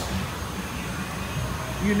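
Steady background hum and hiss with no distinct event. A man's voice starts just before the end.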